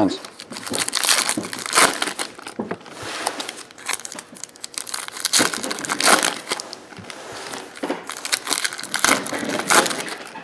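Baseball card pack wrappers being torn open and crinkled by hand, in irregular rustles and crackles.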